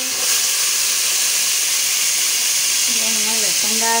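Hot oil sizzling in a cooking pot with a loud, steady hiss as food fries in it.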